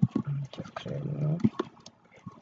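A man's low, drawn-out hesitation sound, an 'uhh' or 'hmm' held for about half a second near the middle, with a few sharp computer-mouse clicks around it.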